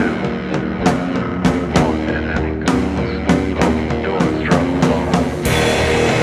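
Instrumental passage of a rock song: drum kit hitting a steady beat under guitar and bass, with no singing. About five and a half seconds in, the band swells into a fuller, brighter, more sustained sound.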